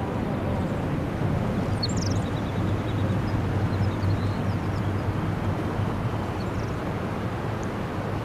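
Outdoor ambience: a steady low rumble with a few faint, high bird chirps, the clearest about two seconds in.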